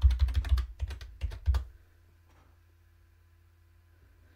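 Computer keyboard typing: a quick run of keystrokes lasting about a second and a half, entering a password at a sudo prompt.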